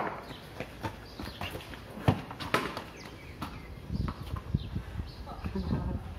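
Sharp knocks of a cricket ball striking a bat or tiled paving, one right at the start and another about two seconds in, followed by footsteps on the tiles.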